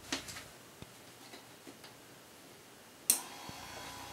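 A few faint clicks, then a sharp click about three seconds in. The electric linear actuator's motor then starts a steady hum with a whine in it as the plunger begins to extend: the prop has been triggered by all three sensor boards being lit.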